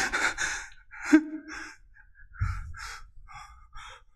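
A man laughs briefly about a second in, then takes a run of short, ragged, breathy gasps, with a dull low rumble under them about halfway through.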